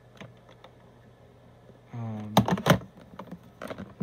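Clicks and knocks of a plastic phone handset being handled, the two loudest close together a little over two seconds in, with a short vocal hum just before them.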